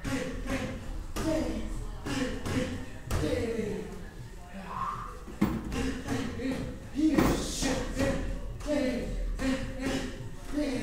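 Punches smacking into focus mitts during pad work: a few sharp thuds, the loudest about five and seven seconds in, under a voice talking throughout.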